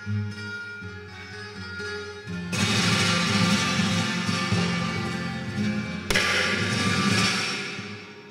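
Solo flamenco guitar passage accompanying flamenco singing, with no voice. The playing grows louder with strummed chords about two and a half seconds in, strikes a sharp chord around six seconds in, then fades near the end.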